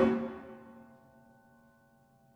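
One sudden struck attack from a piano-and-percussion ensemble. Its pitched ringing fades over about a second and a half, until only a faint high tone is left near the end.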